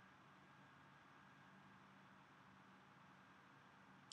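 Near silence: a faint steady hiss with a low hum underneath.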